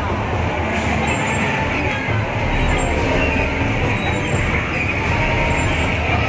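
Steady din of a busy arcade: game machines and crowd noise blended into a dense wash of sound.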